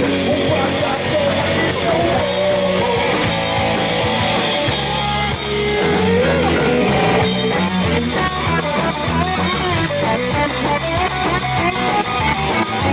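Live rock band playing loud with electric guitar, bass guitar and drum kit. About six seconds in the cymbals drop out for about a second, then the drums come back with a fast, even beat of about four hits a second.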